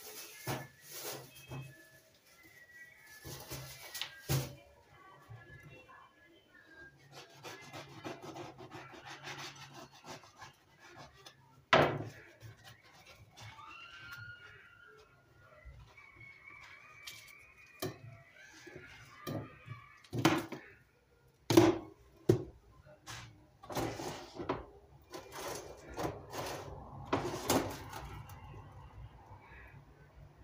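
Scattered knocks, clatter and rubbing of kitchen work at an electric sandwich toaster: the lid opened and the toasted sandwiches lifted off the grill plate and set down on a plate. Two sharp knocks stand out, one about twelve seconds in and one a little past twenty seconds.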